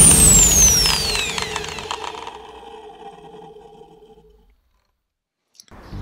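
Closing hit of an intro music sting, with a high whistling sweep that falls in pitch over about two seconds while the music rings out and fades away. It dies to silence by about halfway through, and faint outdoor ambience comes back just before the end.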